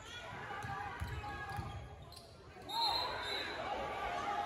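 Basketball bouncing on a gym's hardwood court during play, over spectators' voices in a large, echoing hall. The sound grows louder a little past halfway.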